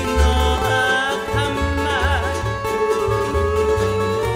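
Hawaiian string-band music: plucked guitar and ukulele over an upright bass walking through steady low notes, with a steel guitar line that slides and wavers in pitch.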